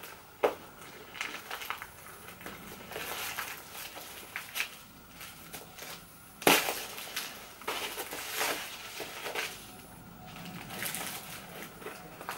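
Hands untying a ribbon and unwrapping a small gift package. Intermittent rustling and crinkling of the wrapping, with a sharp click just after the start and a louder one about halfway through.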